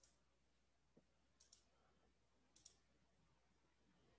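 Near silence with faint computer mouse clicks: a single click about a second in, then two quick double-clicks, one about a second and a half in and one near the two-and-a-half-second mark.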